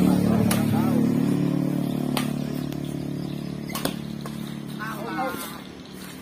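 Badminton rackets hitting the shuttlecock in a rally: three sharp cracks about a second and a half apart. Under them a steady engine hum from a passing motor vehicle fades away, and voices call out briefly near the start and near the end.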